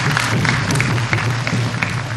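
Audience clapping in a large hall: a dense patter of many hands, with a steady low hum underneath.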